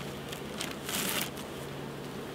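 A sheet of newspaper rustling and crinkling as it is laid flat and smoothed by hand on top of a wooden hive box, with the loudest rustle about a second in. A steady low hum of honey bees runs underneath.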